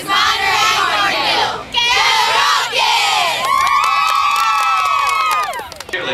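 A squad of teenage cheerleaders shouting and cheering together, breaking into a long, high, held group scream about three and a half seconds in that falls away near the end.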